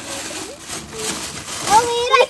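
Thin plastic bag crinkling and rustling as a hand pushes through it where it is stretched over a plastic bucket, with children's voices coming in near the end.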